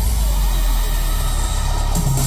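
Backing track through a concert PA at a break in a pop-trot medley: the drum beat drops out, leaving a steady deep bass drone with a faint swept effect before the next song's beat comes in.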